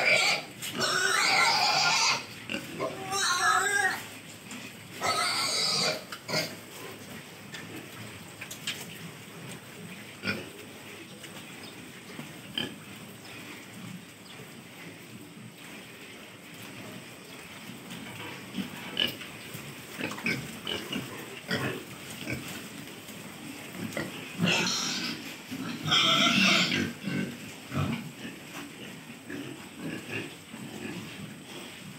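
Pigs squealing in loud outbursts of a second or two each, several in the first six seconds and again a little before the end. In between, quieter grunting and snuffling from pigs feeding on dry ground feed.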